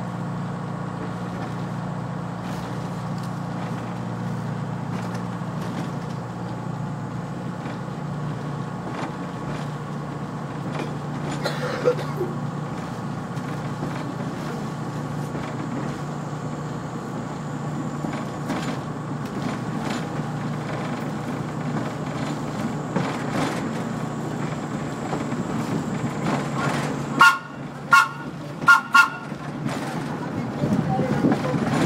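Rail car running along the track with a steady low hum and rumble, then four short horn toots in quick succession near the end.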